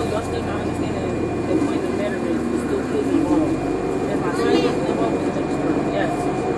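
Inside a 2014 NovaBus LFS articulated hybrid bus: the Cummins ISL9 diesel and Allison EP50 hybrid drive keep up a steady low hum with a thin constant high tone, under passengers talking. A louder, high-pitched voice rises above the chatter about four and a half seconds in.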